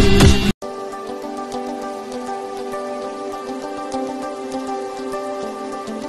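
Soft outro music of sustained held chords with faint scattered ticks over it. It starts after a loud burst of music that cuts off abruptly about half a second in.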